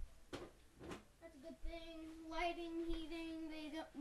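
A child's voice holding one long, nearly level note for about two and a half seconds, wordless like humming, after two short noises near the start.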